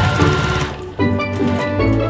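Domestic sewing machine running at speed, a fast even chatter of stitches through fabric and zipper tape, stopping about three quarters of a second in, with background music throughout.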